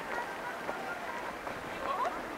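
Footsteps on a paved walkway amid steady outdoor city noise, with faint voices of passers-by.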